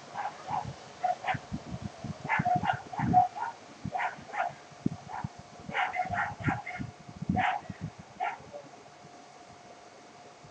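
An animal's short calls in irregular runs over about eight seconds, with low knocks beneath them and a faint steady tone throughout.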